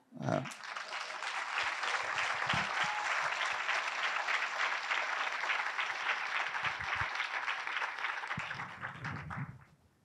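Audience applauding steadily for about nine seconds, then fading out near the end.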